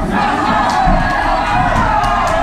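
Fight crowd shouting and cheering, many voices at once, urging on the fighters in the cage.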